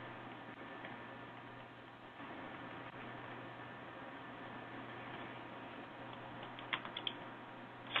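Low steady hiss of a call's audio line with no one speaking, and a short cluster of quick clicks near the end.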